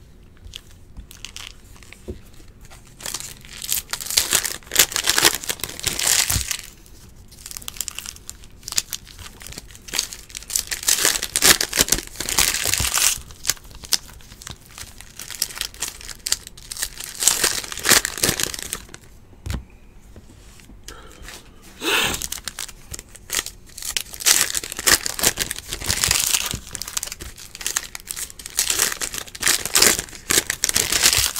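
Foil trading-card pack wrappers (2014 Panini Prizm football packs) being torn open and crinkled by hand, in several bursts of rustling and tearing with short pauses between.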